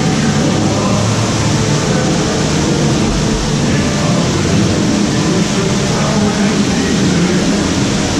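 Steady, dense ambience of a boat dark ride: a loud wash of noise with faint tones of the show soundtrack running under it.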